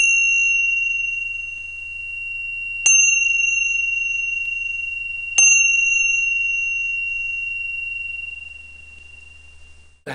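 A small metal bell struck three times, about two and a half to three seconds apart. Each strike rings on in one clear, high tone that fades slowly.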